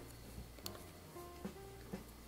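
Soft background music of single plucked notes held one after another, with one faint click a little under a second in.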